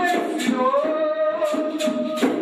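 A Catimbó-Jurema ponto (toada) being sung. The voice holds one long note from about half a second in, over shaken hand percussion.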